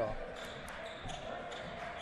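Quiet basketball gym ambience during play: faint voices echoing in the hall, with a few light basketball bounces and taps on the hardwood court.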